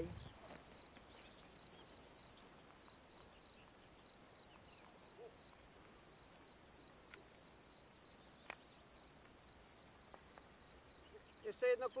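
Crickets chirping in a steady, rhythmic, high-pitched trill, with a couple of faint clicks partway through.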